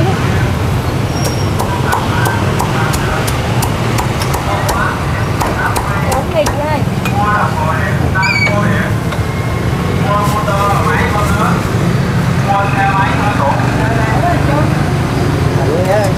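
Cleaver chopping through crisp-skinned roast pork onto a wooden chopping block: a quick series of sharp chops over roughly the first half, then they stop. Steady traffic hum and voices in the background.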